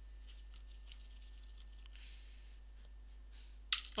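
Faint clicks and scrapes of small hand tools working on an open laptop chassis, with one sharper click near the end.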